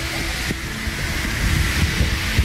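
Steady rushing air with a low rumble as the giant balloon is filled with more air, with a few faint knocks and rubs of the balloon film.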